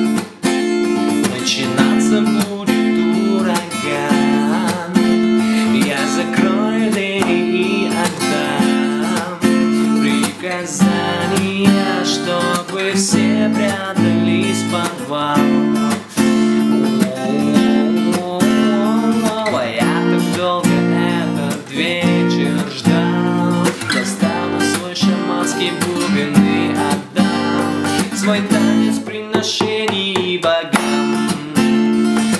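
Ibanez PF15ECE acoustic guitar strummed in a steady reggae-style pattern that mixes open strokes with muted, slapped strokes, moving through the verse chords and landing on A near the end. A man sings the verse slowly over it.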